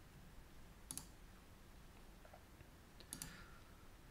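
Two faint computer mouse clicks about two seconds apart, over near-silent room tone.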